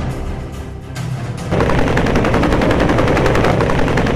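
Bell UH-1 'Huey' helicopter with its two-bladed main rotor turning, running on the ground close by. It sets in about a second and a half in, after a moment of music, as a loud, rapid, even chopping of the blades.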